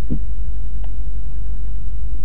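A steady low rumble runs evenly throughout, with one faint click a little under a second in.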